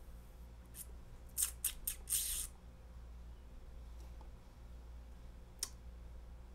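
A few short scratchy rustling noises, a cluster of them about one and a half to two and a half seconds in and one more near the end, over a steady low electrical hum.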